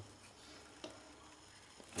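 Near quiet: faint room tone with a single soft click about a second in.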